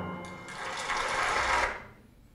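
A recording of an orchestral performance played back in a room. The music dies away into a noisy hiss, which cuts off abruptly near the end as playback is stopped.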